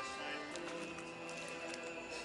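Live serenade music with several instruments holding notes, and a run of light clicks or taps through it.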